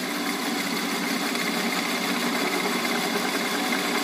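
Shop Fox M1018 metal lathe running steadily under power feed, its carbide bit turning down a spinning piece of oak.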